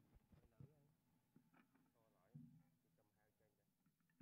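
Near silence with faint voices of people talking.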